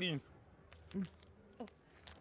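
A person's voice: the end of a spoken word, then a short falling murmur about a second in, with quiet between.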